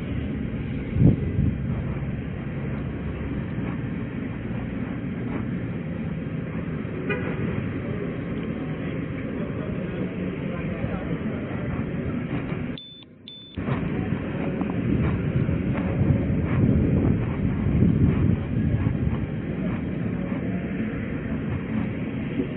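Steady street traffic noise with the rumble of a body-worn camera's microphone as the wearer moves on foot, and a sharp knock about a second in. The sound drops out for under a second about thirteen seconds in.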